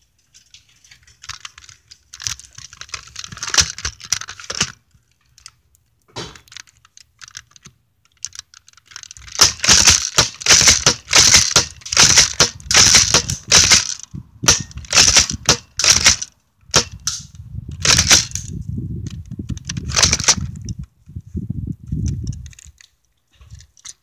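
Airsoft gun firing a string of sharp shots, mixed with close rustling and knocking from the phone mounted on the gun as it swings about. The shots come thickest from about a third of the way in, with a low rumble of handling near the end.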